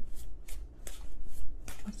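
A deck of oracle cards being shuffled by hand: a run of quick, irregular papery flicks and riffles.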